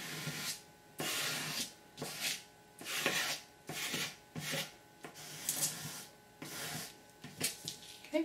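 A thin straight edge scraped in short strokes across wet paper, wiping off the excess shaving cream and acrylic paint left on a marbled print. There are about eight scrapes, roughly one a second.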